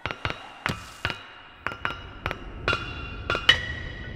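Background music of struck percussion: about ten sharp wooden knocks and ringing pitched strikes in an uneven rhythm. The loudest strike comes near the end, and its ring fades away.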